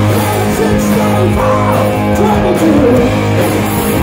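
A live hard rock band playing loudly: distorted electric guitars, electric bass and a drum kit, with a sung lead vocal over them.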